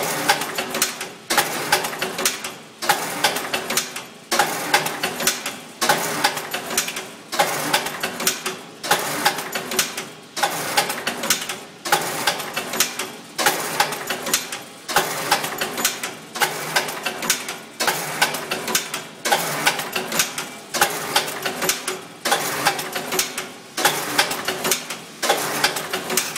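Twine-handling machine running in a steady repeating cycle, about one cycle every 1.3 seconds. Each cycle opens with a sharp clack, followed by a quick run of ticking clatter that fades before the next.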